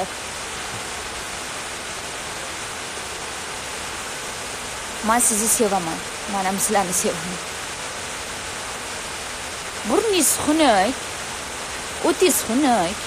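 A steady hiss of background noise, with a woman's voice in short phrases about halfway through and again near the end.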